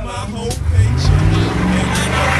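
1997 Ford Expedition's V8 engine revving under load as the SUV climbs a steep dirt bank; its pitch rises about half a second in and then holds steady.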